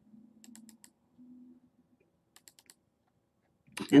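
Faint computer mouse clicks in two quick groups, about half a second in and again about two and a half seconds in, as folders are double-clicked open. A faint low hum comes and goes in the first second and a half.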